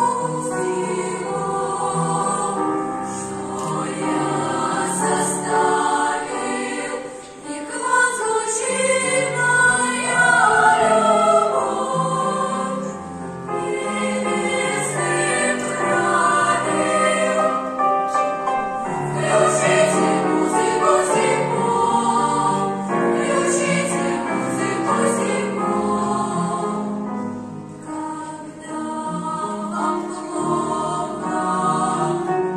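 A girls' choir singing.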